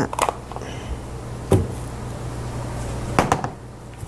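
A few sharp knocks as a metal grater is handled and set down on a table, over a steady low hum.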